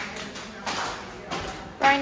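Flip-flops slapping against a hard tiled floor with each step, loud enough to be called 'the loudest flip flops'.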